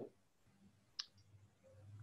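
Near silence with a single sharp click about a second in, followed by a faint low hum.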